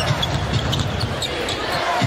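Arena crowd noise during live basketball play, with a basketball being dribbled on the hardwood court.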